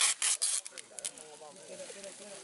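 Plastic-film balloon envelope being taped with packing tape: several short rasping rubs and tape pulls in the first second, then quieter rustling of the plastic sheet.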